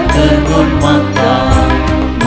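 Church music playing at the Mass: sustained chords with a steady beat.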